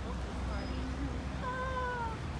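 A person's brief high-pitched vocal sound, held for about half a second and falling slightly, near the end, over a low steady rumble of outdoor background.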